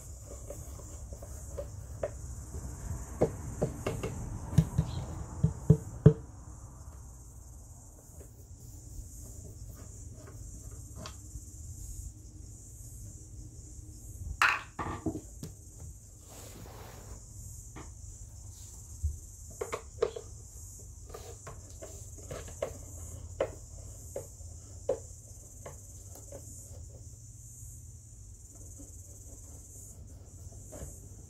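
Screwdriver working the screws out of a subwoofer driver's mounting frame: scattered clicks and scrapes of the metal tip in the screw heads, loudest about four to six seconds in, with another louder scrape near the middle. A steady high-pitched hiss runs underneath throughout.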